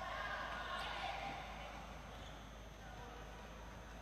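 Faint indoor sports-hall ambience during a stoppage in play, with distant, indistinct voices, growing slightly quieter.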